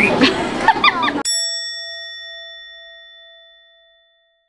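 A single bell-like ding, added as an editing sound effect, struck about a second in and ringing out, fading away over about three seconds while all other sound drops out.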